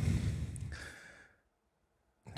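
A man's breathy sigh, starting sharply and fading out over about a second.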